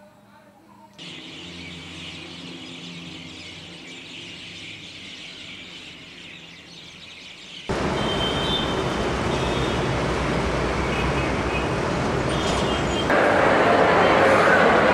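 Edited ambient sound. A steady outdoor ambience with a low hum gives way, about eight seconds in, to loud steady traffic noise with a few bird chirps. Near the end it cuts to a louder hubbub of a busy indoor crowd.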